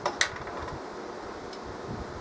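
A single sharp click a moment in, then steady low background hiss.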